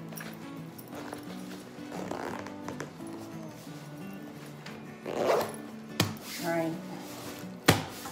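Zipper on a fabric compression packing cube being pulled along in rasping strokes, under steady background music, with two sharp knocks near the end.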